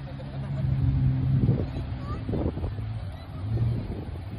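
Lexus LS460's V8 engine running as the car works in soft sand, a steady low hum that eases about one and a half seconds in and comes up again near the end.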